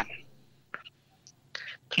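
A short pause in a person's talk: the tail of a word, a lull with one faint click, then a soft breath just before the talking resumes.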